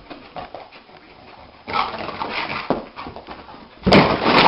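A dog dreaming in its sleep, whimpering and scrabbling its paws on carpet, louder from about two seconds in; near the end, a sharp loud thump as it runs into the wall.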